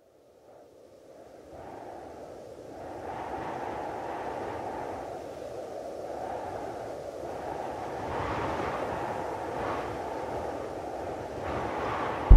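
A muffled rushing noise with its top cut off, fading in from silence and growing louder in slow swells: a sound-design lead-in to the album's next track.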